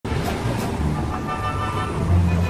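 Dramatic anime soundtrack: background music with low notes moving underneath, mixed with a steady rushing roar of storm and sea sound effects.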